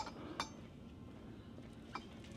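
Quiet indoor room tone with two brief clicks, one about half a second in and one just before the end.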